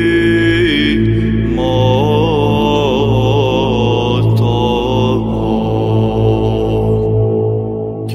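Orthodox liturgical chant: voices singing a slow, winding melody over a steady, low held drone. The melody drops away briefly near the end while the drone holds.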